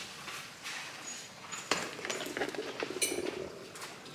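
Hands scrubbing shampoo lather into wet hair at a salon wash basin: soft wet rubbing, then a dense run of small sharp clicks and squelches in the second half, with a couple of brief hissy bursts near the end.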